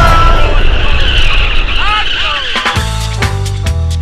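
A loud, dense wash of noise with a high whine and a few brief squealing glides, then music with a steady beat starts about three-quarters of the way through.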